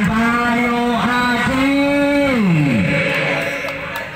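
A single voice holding a long drawn-out call or sung note, stepping up slightly in pitch about a second and a half in, then sliding down and fading out near three seconds in.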